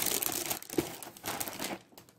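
Plastic cereal-bag liner crinkling and rustling as it is pulled open and handled, a dense crackle that cuts off suddenly near the end.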